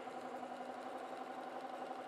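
Sewing machine running at a steady speed, stitching two quilting fabric strips together with an even motor hum.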